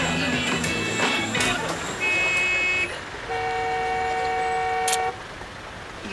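Car horns honking in street traffic: a short high honk about two seconds in, then a longer, lower horn held for nearly two seconds, over background music.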